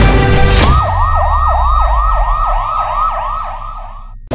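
Intro music stops under a second in, and a fast-warbling siren in a yelp pattern takes over, sweeping up and down about four times a second over a low rumble. The siren fades a little, then cuts off abruptly near the end.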